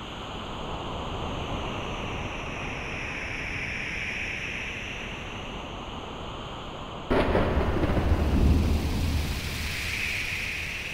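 Rain-and-thunder sound effect of a song's intro. A steady rain hiss runs until a sudden thunderclap about seven seconds in, which rumbles deeply for a couple of seconds and then fades back into the rain.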